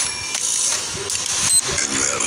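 Mechanical clicking and ratcheting, with a short high tone and a sharp hit about one and a half seconds in.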